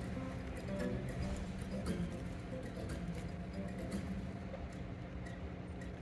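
Unamplified acoustic guitar playing quietly, a steady strummed intro heard faintly.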